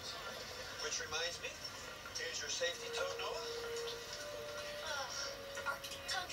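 A TV programme's dialogue and background music played at low level through an E08 budget projector's small built-in speaker, from a video file on a USB stick.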